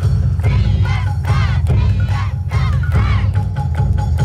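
A yosakoi dance team's shouted calls, about five rising-and-falling cries in the first three seconds, over loud yosakoi dance music with a heavy bass.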